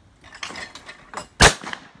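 A single loud, sharp shot from an over-and-under shotgun fired at a clay target about one and a half seconds in, with a short ring after it. Lighter noises come shortly before the shot.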